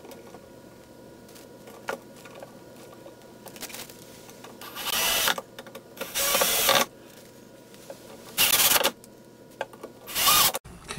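Cordless drill/driver driving screws into a cabinet door's hinges in three short bursts of under a second each, the second soon after the first and the third a little later, with light handling clicks between.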